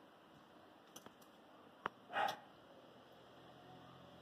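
Mostly quiet room with small clicks of die-cast toy cars being handled and set down on a wooden shelf: two faint ticks about a second in, then one sharp click, followed by a brief soft rustle.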